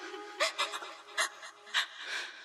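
End of an electronic dance remix: about five short breathy bursts, like a sampled breathing vocal, over a faint held chord that is fading away.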